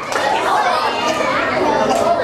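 Many children's voices chattering and calling out at once, overlapping so that no single voice stands out.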